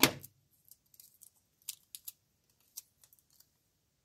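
Faint, scattered small clicks and rustles of construction paper and tape being handled on a tabletop, with a few sharper clicks about two seconds in and again a little later.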